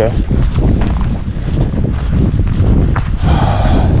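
A hiker's footsteps and trekking-pole taps on dry dirt and leaf litter, a string of short irregular crunches and clicks over a low rumble of wind on the microphone.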